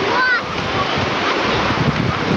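Shallow surf washing over the sand, a steady rush of water mixed with wind buffeting the microphone. A brief high voice sounds just after the start.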